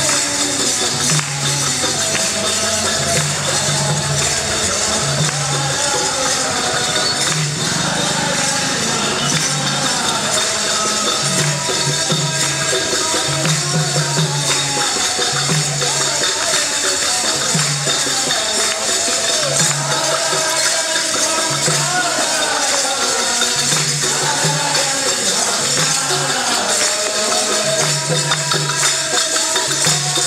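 Group devotional singing of a bhajan while walking, with hand clapping and jingling percussion over a low drum beat that pulses about once a second.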